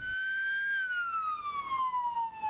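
Ambulance siren wailing. One long tone cuts in suddenly, climbs slightly, then slides slowly down in pitch.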